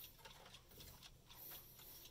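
Faint clock ticking, several quick ticks a second, in near silence.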